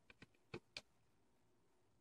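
Near silence with about four faint, short clicks in the first second: the small screws taken off a trimmer's blade being set down on a tabletop.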